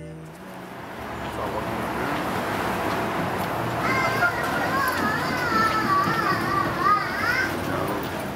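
City street ambience: a steady wash of background noise and passers-by's voices. From about halfway through, a high, wavering voice calls out for three or four seconds.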